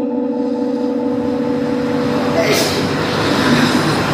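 Man's melodic Quran recitation into a microphone, holding one long steady note that fades away into a breathy, hissing rush over the next few seconds.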